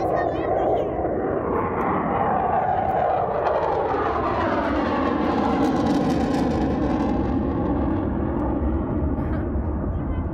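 A military jet flying overhead, its loud engine sound dropping in pitch as it passes about four to six seconds in.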